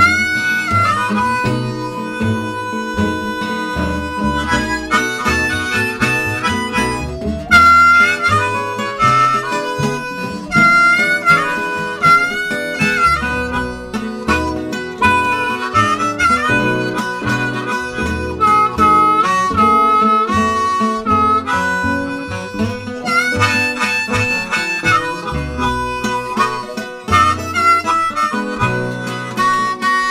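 Blues harmonica solo played with cupped hands, sustained notes with several bends in pitch, over a backing of acoustic and archtop guitars and an upright bass.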